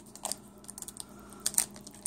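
Foil trading-card pack wrapper being handled and opened, crinkling in a scatter of quick, crisp clicks.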